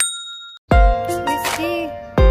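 A bright bell-like ding sound effect at the start, ringing out over about half a second. Just under a second in, background music with a heavy beat comes in.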